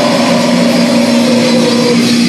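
Loud live band's distorted electric guitars and bass holding a sustained chord through the amplifiers, a steady drone with no drum hits.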